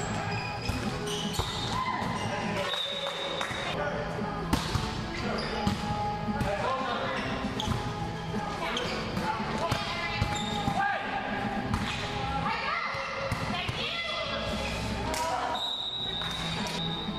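Indoor volleyball rally: repeated sharp smacks of hands and arms striking the ball, echoing in a large gym hall, over players' voices calling out.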